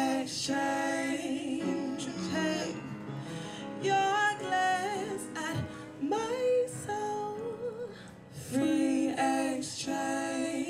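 A woman singing a slow song with piano accompaniment, holding long notes with vibrato between shorter phrases.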